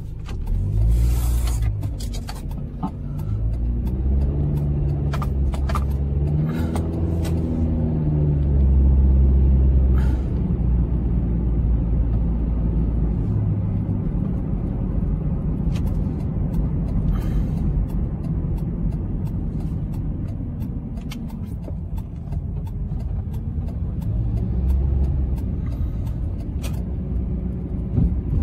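A car's engine and road rumble heard from inside the cabin while driving, the engine note rising and falling with the throttle, most clearly between about four and nine seconds in. A few short knocks or clicks cut through now and then.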